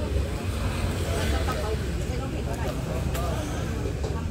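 Voices of people talking in the background over a steady low rumble.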